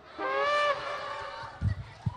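A comic whistle-like sound effect: one held note that fades away over about a second, followed by a few low thumps near the end.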